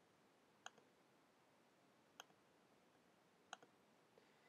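Three faint computer mouse clicks, spaced a second or more apart, over near silence.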